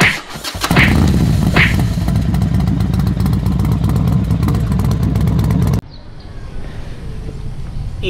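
Motorcycle engine running with a rapid, even firing beat, cutting off suddenly about six seconds in, after which only faint background noise remains.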